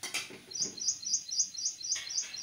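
A small bird chirping in a quick, even series of high chirps, about five a second, starting about half a second in. A brief knock sounds right at the start.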